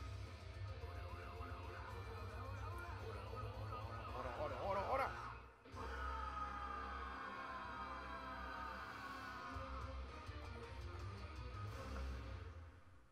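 Anime opening theme song playing back, with a wavering high line about four to five seconds in, a sudden brief drop-out just before six seconds, then the music resuming with gliding lines.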